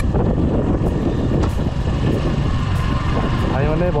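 Steady riding noise from a Suzuki Gixxer motorcycle cruising on an open road: wind rushing over the microphone mixed with the bike's single-cylinder engine running at a constant pace.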